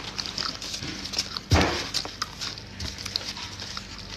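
Close-up chewing and mouth noises of someone eating a wrapped sandwich, with small clicks and a light crinkle of its paper wrapper. A heavier thump about a second and a half in.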